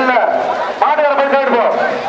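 Speech only: a man talking fast and without pause, in the manner of an announcer's running commentary.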